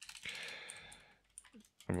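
Computer keyboard typing: a quick run of keystrokes in the first second, with a soft breath under them, then a few lighter key clicks.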